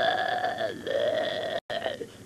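A young person's voice making a long held vocal 'aah' as a character sound, then a second held 'aah' right after it. Near the end the sound cuts out completely for an instant, like a tape edit.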